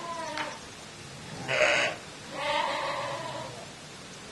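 Sheep bleating three times: a call tailing off at the very start, a short harsh bleat about a second and a half in, which is the loudest, and a longer wavering bleat just after two seconds.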